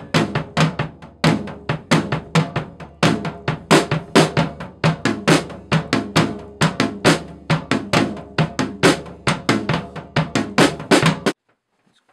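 Acoustic drum kit played in a steady rock beat, with kick drum, snare and Zildjian cymbals struck several times a second. The playing cuts off suddenly near the end.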